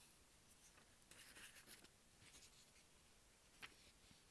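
Near silence: room tone with a few faint, brief scratchy sounds in the middle and a single soft click near the end.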